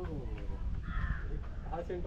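A single short, harsh bird call about a second in, against low voices talking.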